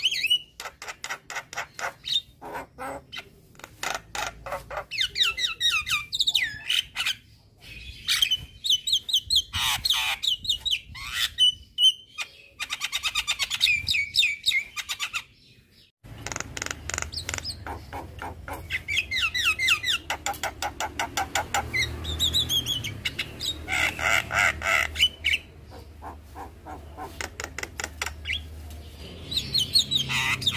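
Young Javan myna singing a long, varied chattering song: rapid runs of repeated clicking notes and trills. There is a short break about halfway, after which a low steady hum sits under the song.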